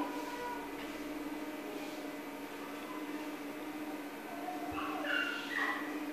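A steady low hum, with a few faint electronic tones that step in pitch about five seconds in. The tones are sounds from an Xbox game being played in another room.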